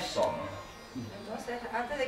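Soft, low speech: voices talking quietly, with no distinct non-speech sound.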